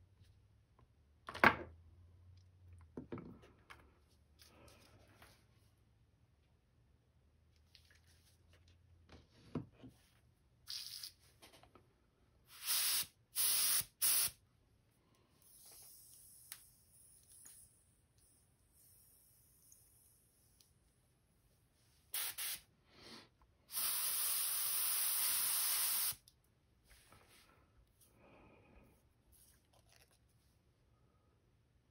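A sharp knock about a second and a half in, then an airbrush hissing in several short bursts and one longer, steady burst of about two seconds near the end.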